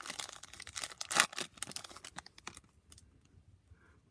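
Foil wrapper of a Topps Formula 1 trading-card pack being torn open and crinkled by hand: a dense crackle, loudest about a second in, trailing off after about two and a half seconds.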